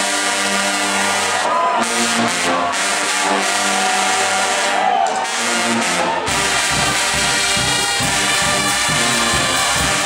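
Guggenmusik brass band of trumpets, trombones and sousaphones holding long sustained chords; about six seconds in the drums come in with a steady beat and the full band plays on loudly.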